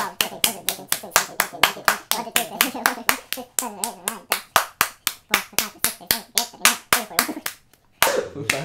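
A rapid, steady run of high fives: bare palms slapping together about five times a second, with a short break near the end.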